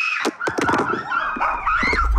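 High-pitched frightened screaming, several shrieks one after another, with a few sharp knocks or clatters about a quarter second in. A low rumble builds in underneath near the end.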